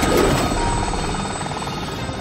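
Cartoon helicopter-rotor sound effect, a fast, steady chopping whir, as the robot's propeller carries it up into the air.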